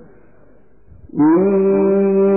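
A male Quran reciter, heard after about a second of low background, comes in loudly a little past the one-second mark on a long, steady held note in chanted tajweed style.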